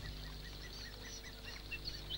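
Faint bird calls: a rapid, even series of short chirps, several a second, with a few higher chirps among them, over a faint low hum.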